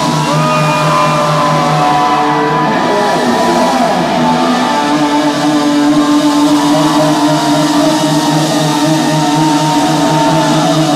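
Live rock band playing a slow power ballad, loud and close: an electric guitar lead with bending notes over sustained chords, bass and drums.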